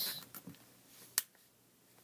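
One short, sharp tap a little over a second in, with a couple of fainter ticks before it: fingers handling the open paper pages of a paperback comic book.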